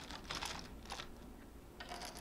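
Small wooden stamp-game tiles clicking against each other and the wooden box as a hand picks them out and sets them on a tabletop: faint light taps, a cluster about half a second in, one near one second and more near the end.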